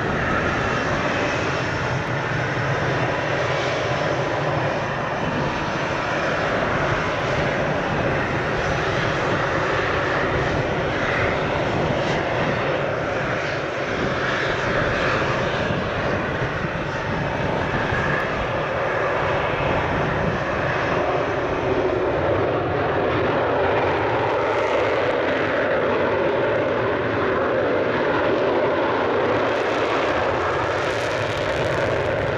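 Twin-engine F/A-18 Hornet fighters taxiing, their General Electric F404 turbofans running steadily at taxi power. The engine noise holds an even loudness with no surge in power.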